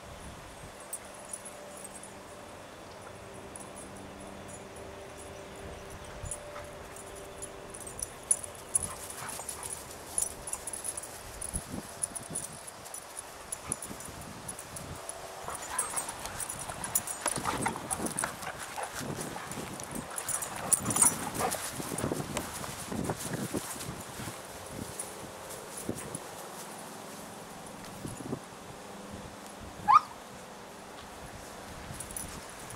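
Two dogs play-fighting on grass: scuffling and knocks with dog vocal sounds, busiest and loudest in the second half.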